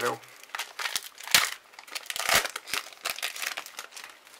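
Foil booster pack wrapper crinkling as it is torn open by hand, in a run of crackles with two louder rips about a second and a half and two and a half seconds in.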